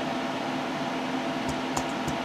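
Steady fan hum from running equipment in a small room, with a few faint keyboard key taps about one and a half seconds in.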